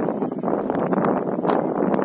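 Wind buffeting the camera's microphone: a dense, steady rumbling noise with a few faint knocks in it.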